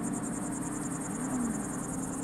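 Insects trilling outdoors at dusk: a continuous high-pitched chirring in a fast, even pulse. Underneath runs a low steady hum, and about a second in a low tone briefly rises and falls.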